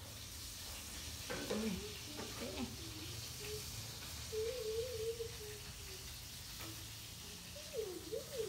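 Baby macaque giving soft, wavering coos in three short bouts over a faint steady hiss.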